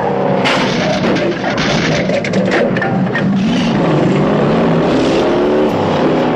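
Big V8 muscle-car engines revving and accelerating in a film car-chase soundtrack, the engine note dipping and climbing through the gears.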